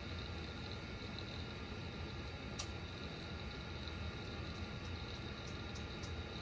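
Steady low hum and hiss of background noise, with one faint sharp click about two and a half seconds in and a few fainter ticks near the end.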